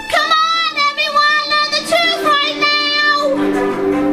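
A woman singing with vibrato over instrumental backing; her voice ends about three seconds in and held string-like notes carry on.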